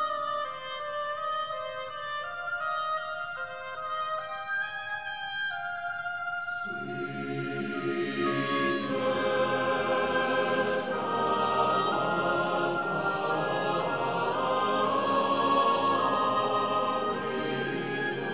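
Chamber choir singing a classical choral piece. A quieter, higher-pitched passage comes first; about six and a half seconds in, lower voices enter, the full choir sings louder, and crisp 's' consonants cut through.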